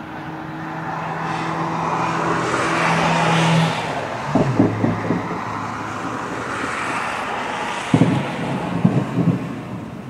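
Distant fireworks salute bangs, dull low thumps coming in clusters about four seconds in and again about eight to nine seconds in. Under them, the rising and falling noise of vehicles passing by.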